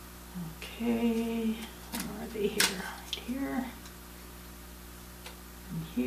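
A woman humming a few short notes to herself, one held steady for about half a second, with a couple of sharp clicks from handling her tools in between.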